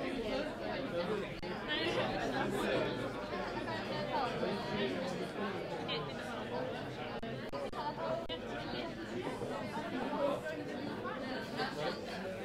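Crowd chatter in a large hall: many voices talking over one another, with no single speaker standing out.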